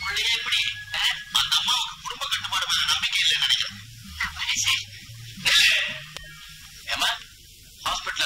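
Speech only: dialogue between characters on a thin, hissy old film soundtrack.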